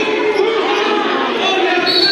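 Overlapping voices of spectators and players in a gymnasium, a steady hubbub of talk and calls.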